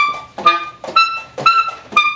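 Solo alto saxophone playing short, accented notes about twice a second, each note fading quickly before the next.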